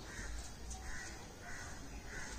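A bird calling three times in a row, the calls short and evenly spaced about two-thirds of a second apart, over a low rumble.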